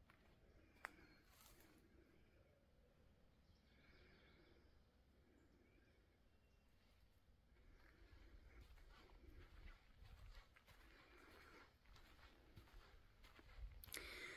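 Near silence: faint woodland ambience with a sharp click about a second in and faint scattered rustles and calls later on.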